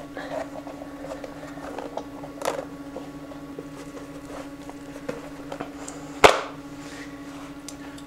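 Wet bark-tanned deer-hide leather being worked and turned inside out by hand: faint soft handling sounds over a steady hum, with one sharp click about six seconds in.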